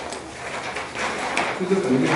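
Indistinct, distant speech in a small meeting room, with a low voice near the end.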